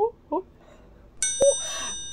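A bell-like 'ding' sound effect of a subscribe-button animation: a sudden bright ring of several high tones about a second in, fading out within about a second, with a single sharp click just after it starts. Before it, two short vocal 'uh' sounds.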